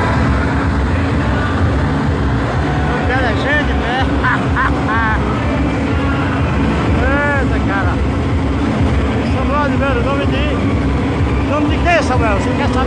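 Loud, steady low rumble from a large sound-rig trailer truck, with many voices calling and shouting over it in short rising-and-falling bursts.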